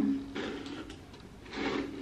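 Faint rustling and handling sounds of damp hair being flipped over and a hairbrush being picked up. The end of a drawn-out word trails off just after the start, and there is a faint murmur near the end.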